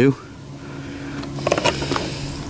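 Distant outboard boat motor humming steadily on the river, slowly getting louder as it approaches. There is a brief rustle about one and a half seconds in.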